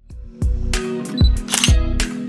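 Background music with a steady beat of low kick-drum thumps under held synth notes, with a short bright swish about one and a half seconds in, like a transition sound effect.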